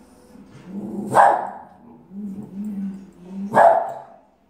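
Boston Terrier giving low growls broken by two sharp barks, about a second in and near the end: alarm barking at a shark-shaped pool float it is afraid of.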